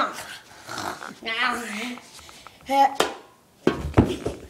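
A young boy making wordless, animal-like vocal noises in two stretches, followed by a sharp knock about three seconds in and dull thumps and rustling near the end.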